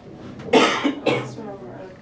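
A person coughing twice in quick succession, about half a second in and again a second in, the second cough trailing off in the voice.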